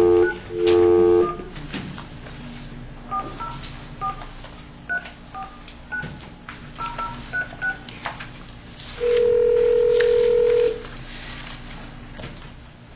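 Speakerphone dialing out: a steady dial tone that cuts off about a second in, then a quick run of about a dozen short keypad tones as a phone number is dialed, then a single ringing tone on the line about nine seconds in.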